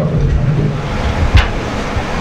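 Low rumbling noise on a handheld microphone between sentences, with a single sharp knock about one and a half seconds in.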